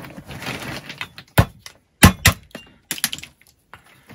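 Walnuts clattering as hands rummage in a bag of them, then several sharp, separate cracks as walnuts set on the mouths of champagne bottles are split with hammer blows.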